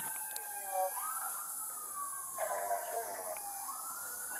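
Emergency vehicle siren wailing, its pitch sweeping slowly down and back up in long cycles of about two seconds.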